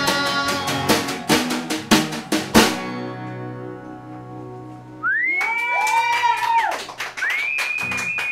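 Acoustic guitars and a snare drum finishing a song: a few last drum hits over strummed guitars, then a final hit about two and a half seconds in and the last chord ringing out. After that come two long high-pitched sounds, each gliding up, holding and falling away, over quick clicks.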